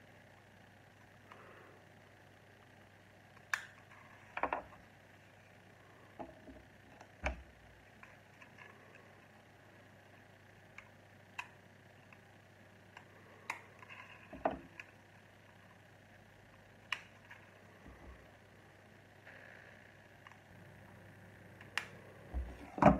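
Small plastic Lego pieces clicking and tapping as they are handled and pressed onto a model car, about a dozen scattered sharp clicks over a faint steady hum.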